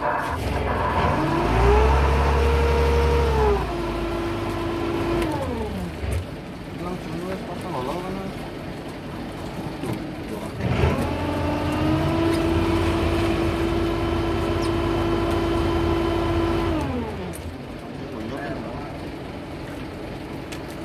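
A fishing boat's powered net hauler running up to speed with a rising whine, holding steady and then winding down. This happens twice: a shorter run about a second in and a longer one from about eleven seconds in.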